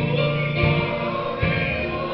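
Mixed choir singing a gospel song in sustained notes, led by a male singer on a microphone, with guitar accompaniment underneath.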